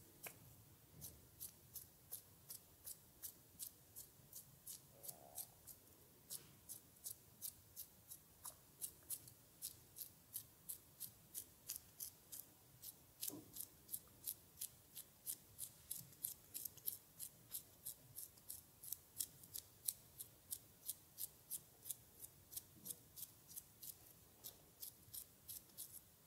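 Hands massaging an oiled face: a faint, even series of soft wet clicks, nearly three a second, as the fingers press and lift off the slick skin.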